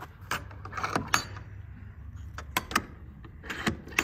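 Metal door latches and a locking handle on a horse trailer's wooden back doors clicking and clacking as they are unlatched and the doors opened. It is a string of sharp metallic clicks, the loudest about a second in, with a quick cluster of clicks later on.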